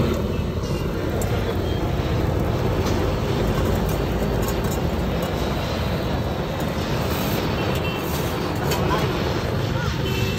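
Handheld LPG gas blowtorch burning with a steady, even rushing noise.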